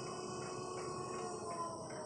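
Acorn curved stair lift's drive motor and gearing running as the chair travels along its curved rail: a steady whine of several held tones that sink very slightly in pitch, with a faint repeating flutter about three times a second. It keeps a steady pace on its newly fitted battery.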